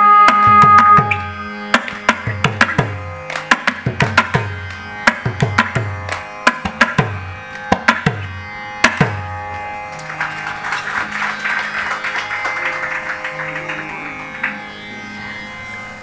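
Carnatic vocal ensemble holding a final sung note, then mridangam strokes with booming bass decays for about eight seconds, ending on a last stroke. Audience applause follows for the last several seconds over a faint drone.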